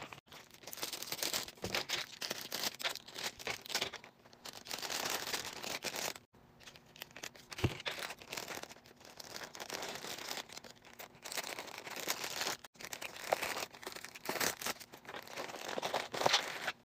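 Plastic packaging crinkling and rustling in irregular bursts as a poly bubble mailer and clear cellophane candy bags are handled, broken by a few abrupt cut-offs.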